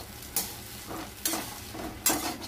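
Spatula scraping and turning chowmein noodles in a steel wok, three scraping strokes less than a second apart over a low, steady frying sizzle.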